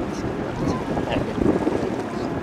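Wind on the microphone by the river, with people talking indistinctly in the background.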